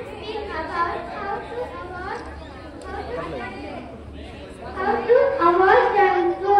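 Speech only: a voice speaking over a microphone and loudspeaker, with chatter behind it, louder near the end.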